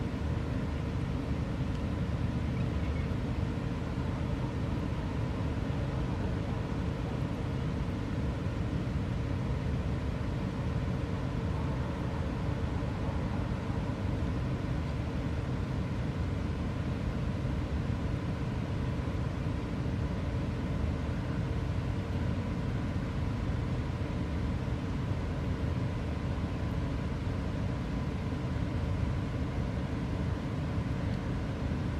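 Steady low rumble of distant traffic, with a faint constant hum above it.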